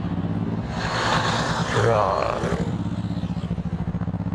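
Motorcycle engine idling steadily, with a swell of passing traffic noise in the middle.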